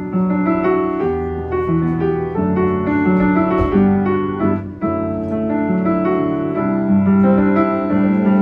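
Upright piano played live, a slow melody over held chords and bass notes. There is a soft low thud about three and a half seconds in.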